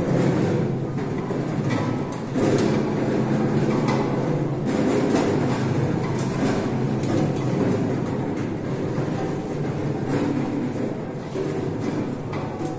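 Hand-cranked rotary wire-drum lemon grader turning, with lemons tumbling and knocking against the rotating cage: a continuous rattling rumble with many small knocks.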